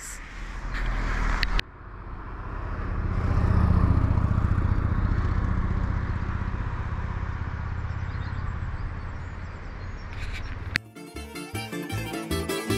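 A low road-vehicle rumble that swells to a peak a few seconds in and then slowly fades. About a second before the end, background music with plucked strings starts.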